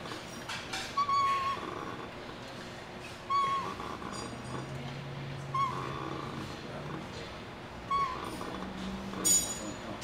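Leg curl machine squeaking once on each rep: four short, high squeaks a little over two seconds apart, with light clinks of the weight stack.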